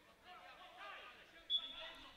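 Faint, distant shouting and voices of young players on a synthetic-grass futebol 7 pitch during a throw-in, with a short high-pitched sound about one and a half seconds in.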